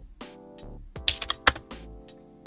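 Background music with steady sustained tones, over which come several irregular clicks from a computer keyboard, clustered about a second in.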